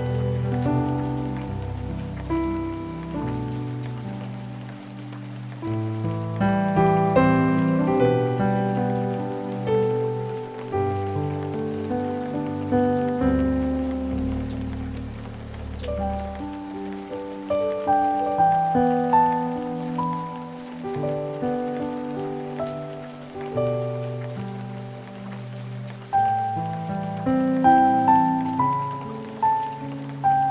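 Solo piano playing a hymn arrangement, layered over a steady recording of rain falling.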